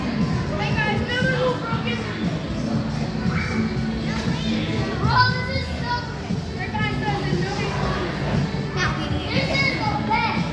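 Many children's voices and shouts, the hubbub of kids playing in a large indoor hall, over background music.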